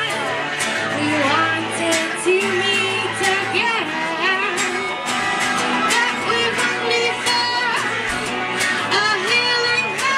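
Live rock band: a woman singing into a microphone over electric guitars strummed in a steady rhythm.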